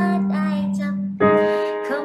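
Electronic keyboard playing held chords, with a new chord struck a little past halfway.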